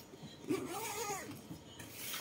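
A single faint cat meow that rises and then falls in pitch.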